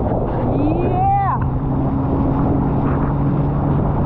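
Rushing wind and water against a towed inflatable tube, with the steady drone of the towing motorboat's engine. A brief rising shout about a second in.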